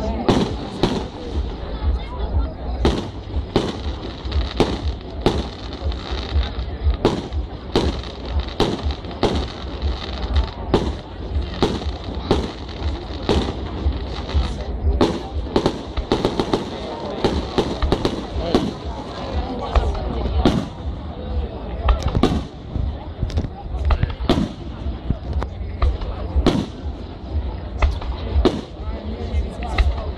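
Aerial fireworks display: shells bursting in quick, irregular succession, sharp bangs often more than one a second, over a steady low rumble.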